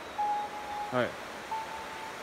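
A man's voice saying a single short "hai" about a second in, over a steady background hiss. Faint whistle-like tones of one steady pitch come and go around it.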